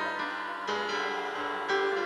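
Piano playing sustained accompaniment chords, with a new chord struck about two-thirds of a second in and again near the end.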